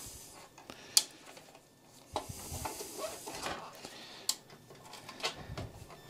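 Handling noise from a computer power supply unit being moved into place behind a PC case and its cable plugged in: a few separate sharp clicks and knocks with soft rustling between them.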